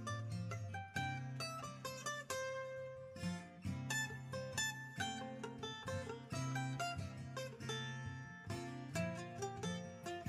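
Background music played on plucked acoustic string instruments: a quick run of picked notes over a steady low accompaniment.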